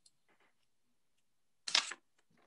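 Near silence, then near the end a single short burst of noise from a video-call participant's microphone as it is unmuted.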